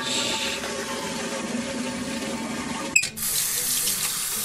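Water running, as from a sink tap, in two stretches: a steady run, a short break with a click about three seconds in, then a brighter run.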